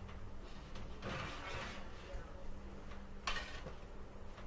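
A metal baking sheet being slid out along an oven rack: a scraping rush about a second in, then a short sharp metal clank near the end.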